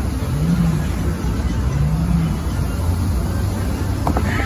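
Bellagio fountain water jets rushing and spraying back down onto the lake, a steady loud wash of water noise with a deep rumble underneath.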